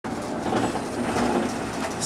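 Steady rumble inside the passenger cabin of a Budd RDC diesel rail car.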